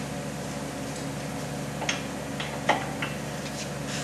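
A few light clicks and knocks of hand tools and metal parts on the steel tool block of a split-frame pipe cutting machine as the cutting blade is adjusted, in the second half, over a steady hum.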